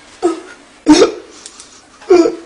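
A man's short, gasping sobs: two sharp vocal outbursts, the second, about a second in, much louder.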